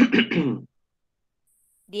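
A man clearing his throat once, lasting about half a second; a spoken word begins near the end.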